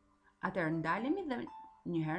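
A woman speaking in a lesson narration: a phrase from about half a second in to about one and a half seconds, and speech starting again near the end, over faint steady tones.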